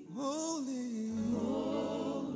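Worship team singing a slow gospel song. A new phrase starts just after a short dip, its pitch sliding up, and a low sustained bass note comes in about a second in.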